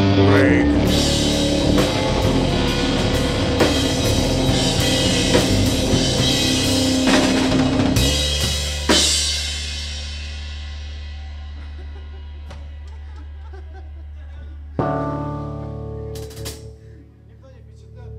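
Live stoner-rock band playing a heavy riff on guitars, bass and drums; about eight seconds in it stops on a final hit, leaving the chord ringing out over a steady low amp drone. Near the end a single chord is struck and left to fade.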